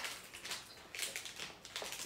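Plastic snack wrapper crinkling as it is handled and opened: a quick, uneven run of small crackles.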